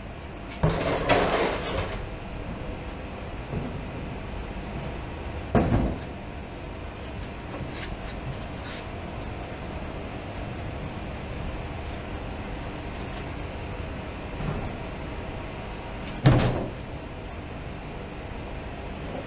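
Knocks and scrapes from handling a plastic drum of teat dip, in three short bursts: about a second in, about a third of the way through, and near the end. A steady machinery hum runs under it.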